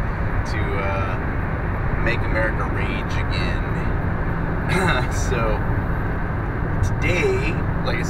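Steady low rumble of road and engine noise inside a moving car, with short snatches of voice throughout.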